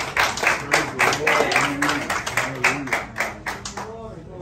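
People clapping their hands in a quick, steady rhythm, about four claps a second, with voices underneath. The clapping fades out toward the end.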